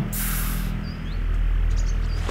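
Outdoor ambience: a brief rush of noise just after the start, over a steady low hum, with a few faint bird chirps about a second in.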